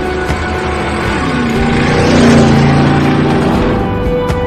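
Harley-Davidson motorcycle sound effect passing by: the engine grows louder, peaks a little past the middle as its pitch drops, then fades near the end. Background music plays under it.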